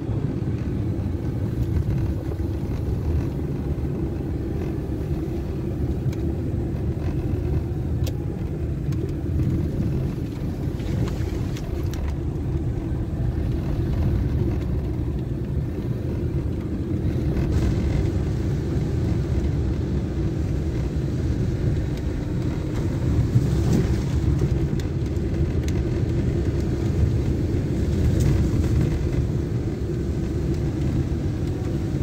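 Car driving on a rough dirt road, heard from inside the cabin: a steady low rumble of engine and tyres, with a few brief knocks from bumps, the loudest a little past the middle.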